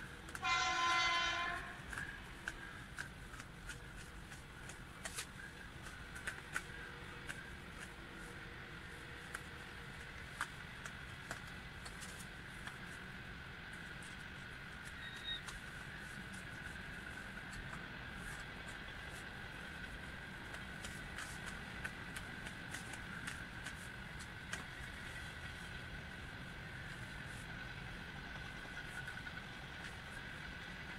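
A horn sounds once near the start, a single steady note lasting about a second and a half. After it come scattered faint clicks of plastic parts being handled, over a steady faint hum.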